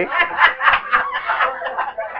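Laughter in a run of short chuckles, tapering off near the end.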